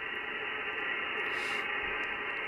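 Steady receiver hiss and static from an Icom IC-7300 HF transceiver's speaker, tuned to 14.304 MHz upper sideband with the squelch open. It is even band noise with nothing above the voice range.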